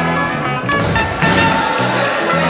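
Background instrumental music with a steady bass line, and a single thud about three quarters of a second in.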